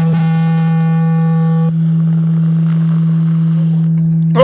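A loud, steady, low electronic tone, a held note at the close of the show's intro music. Nearly two seconds in its upper overtones drop away, leaving a plain low hum that holds on unchanged.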